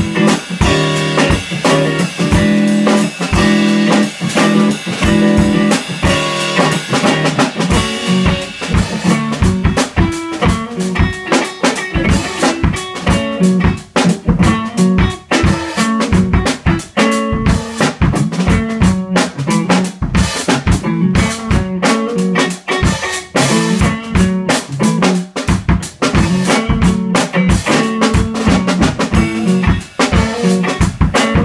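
Electric guitar and drum kit playing an instrumental jam together, the drums keeping a fast, steady beat under the guitar.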